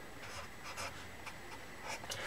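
Pen on paper: a series of short, faint scratching strokes as numbers and symbols are written.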